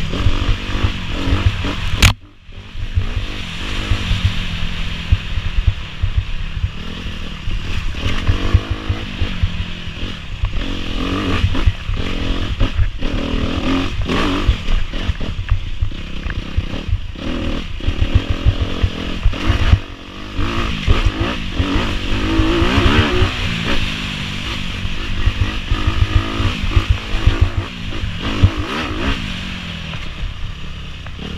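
Dirt bike engine running as the bike is ridden over a rough wooded trail, its pitch rising and falling with the throttle. There is a sharp click about two seconds in, followed by a brief drop in the sound, and another short lull about twenty seconds in.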